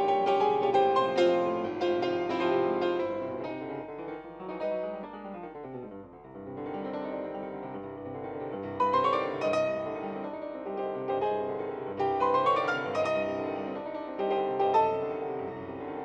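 Solo classical piano played on a Fazioli concert grand, dense and fast, with a quick descending run that softens about five seconds in before the playing grows louder again from about nine seconds.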